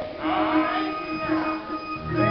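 Church organ holding a steady note, with a voice gliding over it in the first second.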